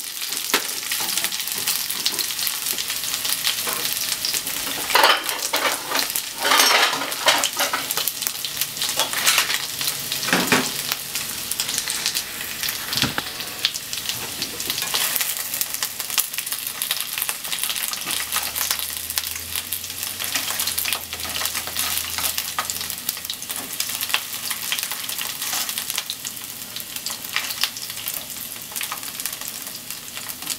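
Chicken pieces sizzling in oil in a frying pan, with the clicks and scrapes of tongs turning them. The sizzle flares louder a few times in the first half.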